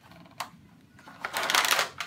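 A single click, then about a second in, the paper wrapper of a sterile gauze packet being torn open with a loud rustle lasting most of a second.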